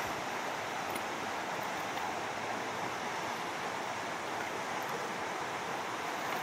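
Steady rushing of a shallow river running over rocks.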